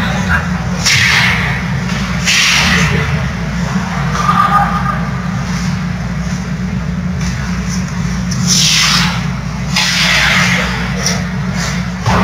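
Ice hockey rink sound: skate blades scraping across the ice in several short swishing sweeps, over a steady low hum and faint voices.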